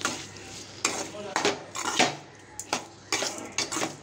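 A metal spatula scraping and knocking against an aluminium kadai while stirring sliced onions, tomatoes and green chillies, in about seven irregular strokes.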